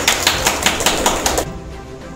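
A small group of people clapping their hands, a quick run of claps that stops about one and a half seconds in.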